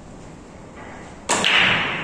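A single loud, sharp clack of hard billiard balls striking, a little past halfway, ringing out for about a second, with a lighter click near the end.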